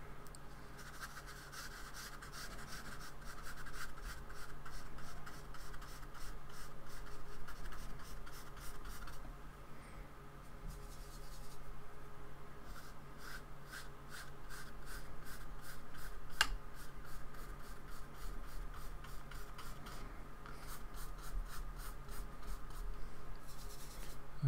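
A paintbrush scratching and rubbing across paper in runs of short, repeated strokes as acrylic paint is dragged on, over a steady low hum. A single sharp click comes about two-thirds of the way through.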